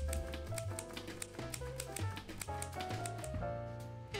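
Background music with a bass line and melody, over the clacking of manual typewriter keys, about four or five strikes a second. The key strikes stop shortly before the end while the music carries on.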